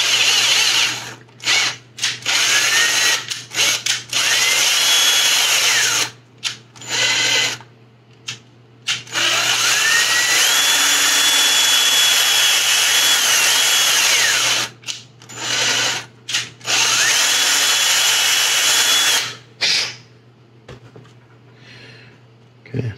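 Ryobi cordless drill run in repeated short bursts and one longer run of about five seconds, its motor whine rising each time it spins up, drilling out a 5/32-inch hole in a small model-kit part to take an LED. The drilling stops a couple of seconds before the end.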